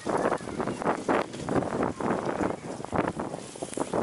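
Footsteps crunching on packed, frozen snow at a walking pace, about two to three steps a second.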